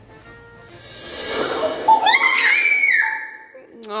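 Short music sting added in the edit: a rising whoosh builds over the first two seconds, then a held high tone sounds until about three seconds in.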